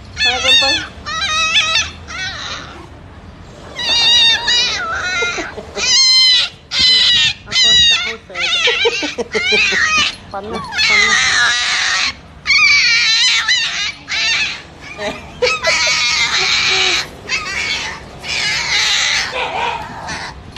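Small poodle puppy squealing and yelping over and over in high, wavering cries, some drawn out and some short.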